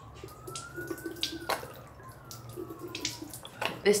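Squeeze-bottle saline nasal rinse: short hissing squirts and splashes of water, the loudest about a second and a half in. Behind them a faint siren wails slowly up and then down.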